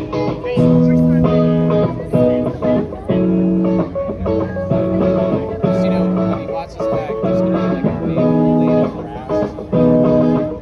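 Live rock band playing: electric guitar chords over bass and drums, the chords changing about every half second.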